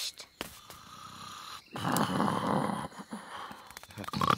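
A cartoon gnome snoring in his sleep: one long, noisy snore about two seconds in, lasting around a second.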